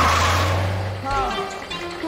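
Cartoon truck sound effect: a low engine hum with a rush of noise as the semi-truck speeds in, starting suddenly and fading out after about a second. A short voice exclamation follows.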